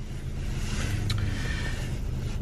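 Car cabin noise: a steady low hum with a rushing sound that builds over the first second, and a single click about a second in.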